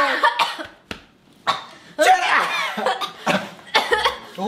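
Excited voices exclaiming and laughing without clear words, with short cough-like bursts. There is a brief lull about a second in.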